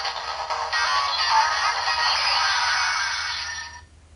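Fourze Gaia Memory toy playing a music clip through its small built-in speaker. It sounds thin, with no bass, and cuts off shortly before the end.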